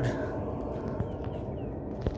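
Steady low outdoor background rumble, with a single sharp click about a second in and a few faint short high chirps just after.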